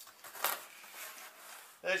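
A framed canvas print sliding out of a cardboard box packed with bubble wrap: rustling and scraping, with a few sharp knocks, the loudest about half a second in.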